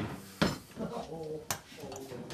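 Steel plane blade in its honing guide clinking as it is handled and set down on a waterstone: two sharp metallic clacks about a second apart.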